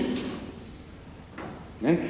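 A man's voice in a pause of speech: his last words die away in the church's reverberation, leaving a quiet room for about a second and a half, then speaking resumes briefly near the end.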